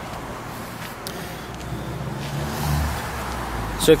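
Low motor-vehicle engine hum with background noise, swelling about two to three seconds in and then easing off.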